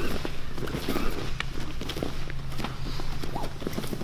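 Two grapplers moving on a foam mat: bare feet, knees and hands knock and shuffle irregularly on the mat surface. A steady low hum runs underneath.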